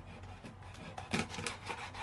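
Kitchen knife sawing through a whole fish on a plastic cutting board: a run of short rasping strokes, mostly in the second half.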